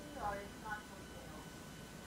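Faint, low-level speech: a few short snatches of a voice in the first second, too quiet to make out, over a low background hum.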